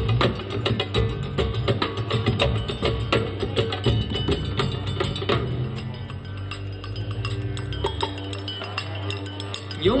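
Live folk band instrumental intro: clinking metal hand percussion struck in a quick steady rhythm over low sustained tones. The strikes drop away about halfway through, leaving the low tones, and a male voice starts singing right at the end.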